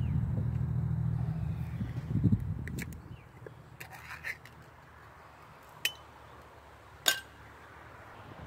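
A low engine hum, like a passing vehicle, fading away over the first three seconds, then a few sharp metallic clinks spread through the rest, the clearest near seven seconds in.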